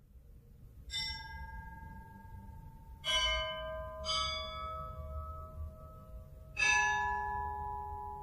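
Bells struck four times at different pitches, about a second in, near three seconds, near four seconds and near seven seconds, each note ringing on and overlapping the next over a low hum; the third strike and the last are the loudest.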